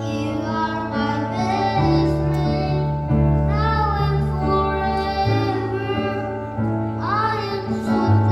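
A young boy singing a melody into a handheld microphone over instrumental accompaniment with held bass notes that change every second or two.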